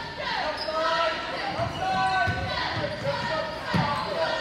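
Basketball game sounds in a gym: sneakers squeaking on the hardwood floor and a basketball bouncing a few times, with crowd voices behind.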